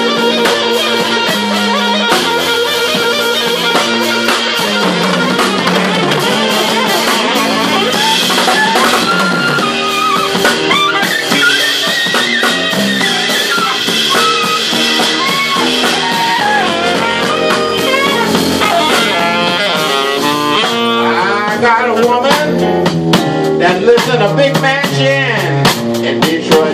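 Live blues band playing an instrumental passage on fretless electric bass, keyboards and drum kit. The drums get busier over the last few seconds.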